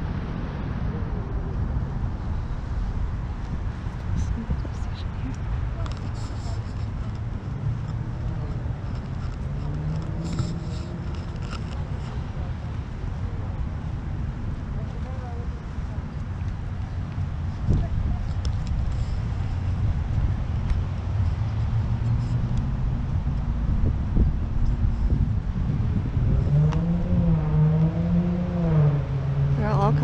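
Steady low rumble with people's voices talking quietly in places, clearest near the end.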